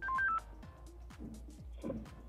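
A quick run of four short electronic beeps at stepping pitches from a handheld DMR radio as its push-to-talk key is pressed to key up a test transmission.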